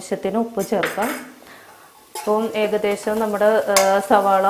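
A woman speaking, with a short pause about a second in, over a faint sizzle of onions frying in ghee in a pressure cooker.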